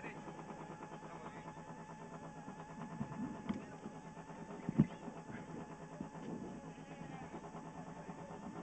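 Rally car engine idling steadily, heard from inside the cabin, with a single short thump about five seconds in.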